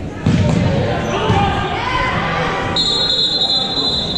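A basketball being dribbled on a gym's wooden floor, echoing in the hall amid players' and spectators' voices. About three quarters of the way in, a referee's whistle blows one long, steady note.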